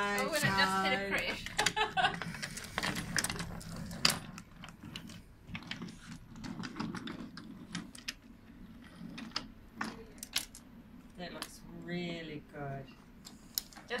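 Wooden toy train cars and wooden track pieces clicking and clacking as they are pushed along and handled: a run of light, irregular clicks and knocks.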